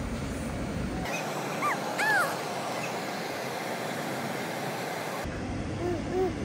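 A baby's brief high vocalisations: two or three short arched squeals about two seconds in, over a steady background hiss.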